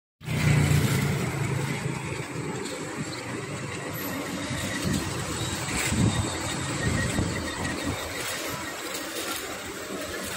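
Street traffic: cars driving past close by, engines running over steady street noise, with the loudest passes near the start and about six seconds in.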